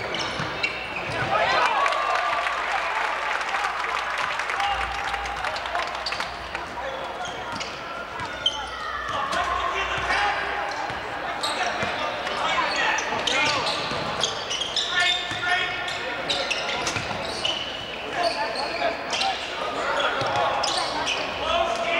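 Basketball game sounds on a hardwood gym court: a ball bouncing and players' feet moving, over a steady background of crowd and bench voices.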